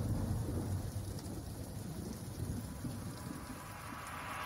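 Quiet, low rumbling noise with a hiss on top: the ambient intro of a song as the track restarts, before the beat comes in.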